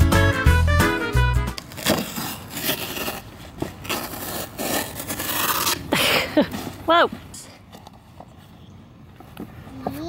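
Background music for the first second and a half, then a cardboard shipping box being torn open by hand: scraping, crackling cardboard flaps and packing tape pulled apart for several seconds, fading to quiet rustles after a brief vocal exclamation about seven seconds in.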